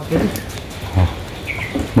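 Steady hiss of rain falling outdoors, with a brief high chirp about one and a half seconds in.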